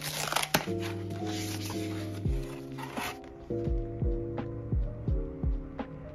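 Background music with a steady beat, over the rustle and tearing of a cardboard box and its packing being opened, which lasts for about the first three seconds.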